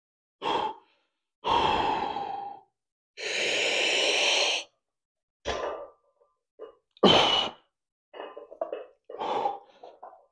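A man's heavy, forceful exhales and breaths during a set of bent-over dumbbell rows, a hard breath out with each effortful rep. There are about eight separate breaths, the longest and strongest in the first half.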